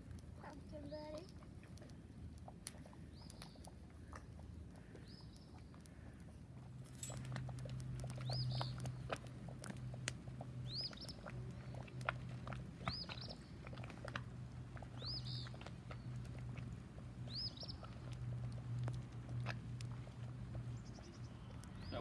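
A bird calling over and over, a short high chirp about every two seconds, fainter at first and clearest through the middle, over scattered faint clicks. A low steady hum comes in about a third of the way through.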